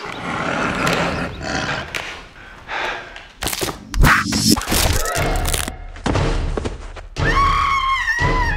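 Film action soundtrack: bursts of rushing noise and heavy thuds, the loudest about four seconds in, then music with long held high notes comes in near the end.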